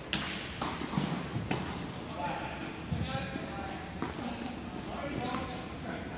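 Tennis balls being struck and bouncing in an indoor tennis hall: a series of sharp, irregular knocks that ring on in the hall's echo.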